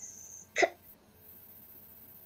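A single short, clipped vocal sound from a child heard over a video call, about half a second in, like a hiccup or a cut-off syllable; a faint high thin tone dies away just before it, and the rest is quiet line noise.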